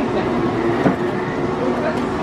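A steady mechanical rattle and hum, with faint voices behind it.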